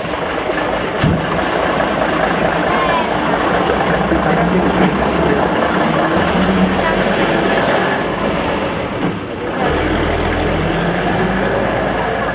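Diesel engine of a vintage Jelcz 'ogórek' city bus driving past close by and pulling away, running steadily, with a deeper rumble near the end.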